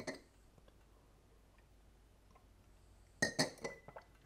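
Glass clinking: a quick cluster of sharp clinks about three seconds in, one of them ringing briefly, after a single click near the start and quiet room tone.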